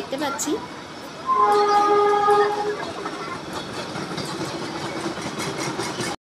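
Indian Railways express train passing close by, its coaches rumbling and clattering over the track. About a second in, a train horn sounds one steady blast of about a second and a half, the loudest sound here.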